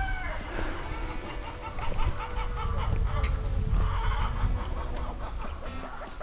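Backyard chickens clucking, in quick repeated short calls, over a low rumble of wind on the microphone.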